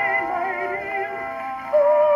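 Victor VV-50 wind-up phonograph playing a 1914 acoustically recorded 78 rpm record: a female singer holding slow notes with vibrato over accompaniment. A louder held note comes in near the end.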